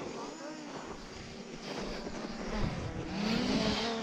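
Wooden sledge's runners sliding over packed snow: a steady scraping hiss that grows louder over the second half as it gathers speed.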